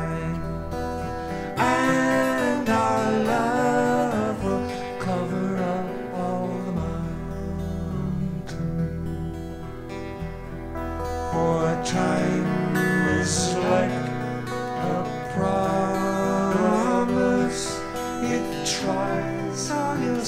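Live acoustic folk song: two acoustic guitars strummed and picked, with a male voice singing long held lines over them.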